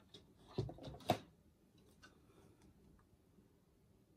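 A few light knocks and a sharp clack as a paint cup is picked up and moved across a work table, all about a second in, followed by faint handling noise.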